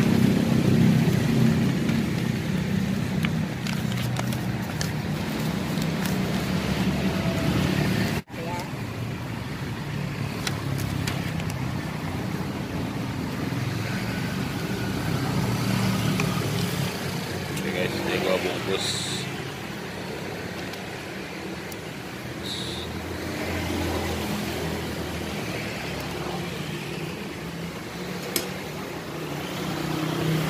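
Road traffic with a vehicle engine running close by, strongest in the first several seconds, under faint indistinct background voices.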